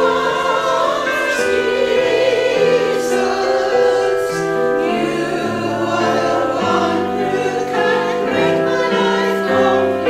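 A small women's choir singing together in sustained, held notes, the sung line moving from note to note every second or so.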